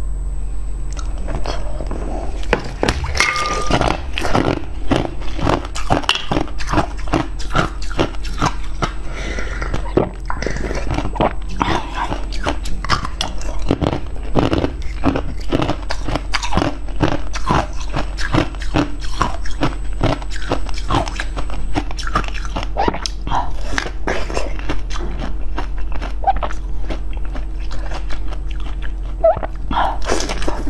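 Close-miked crinkling and crackling of clear wrapping being handled and peeled off red, bead-filled jelly sweets: dense, irregular, sharp clicks throughout. Mouth sounds of eating join near the end, over a faint steady low hum.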